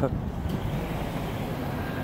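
Steady low rumble of motor vehicles in a parking lot: nearby engines running and passing traffic, with no distinct events.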